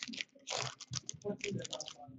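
Hockey trading cards being flipped and slid one behind another in the hands: a quick run of light clicks and swishes of card stock, busiest from about half a second in.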